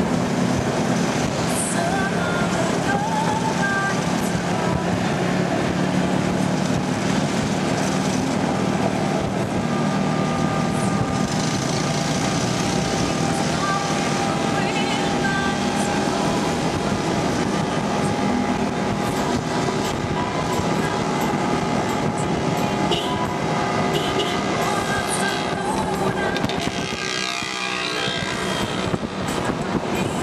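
Steady engine and road noise of a moving vehicle, heard from on board.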